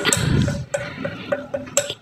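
A metal spoon pressing and tapping on a stainless steel pot, a few light metallic clicks, over the low noise of a gas burner flame.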